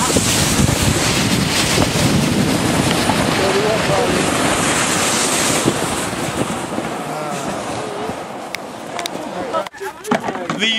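Wind rushing over the microphone together with the hiss of a sled sliding fast over snow, easing off toward the end as the ride slows.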